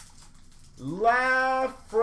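A person's drawn-out wordless vocalizing, an 'ooh'-like sound: about a second in, a note that swoops up and holds, then a second one starting near the end.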